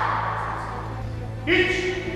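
Shouted drill calls of a karate class echoing in a large gymnasium. A loud shout dies away in the hall's echo, then a short, rising shouted call comes about one and a half seconds in.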